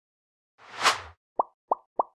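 Logo sting sound effect: a short whoosh that swells and fades just under a second in, followed by three quick pops about a third of a second apart.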